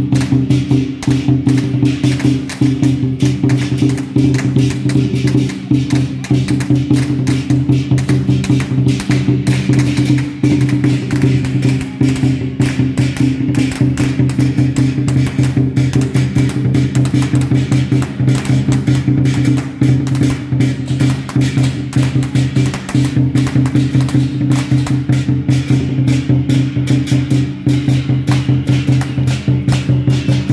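Temple procession percussion: a fast, even beat of drums and cymbals over a steady low tone, played for a dancing shen jiang deity figure.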